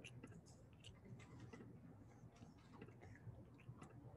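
Near silence: faint room tone with a low hum and scattered faint clicks at irregular spacing.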